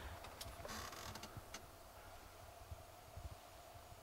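Faint handling noise: a few light clicks and a brief rustle about a second in, over a low background rumble.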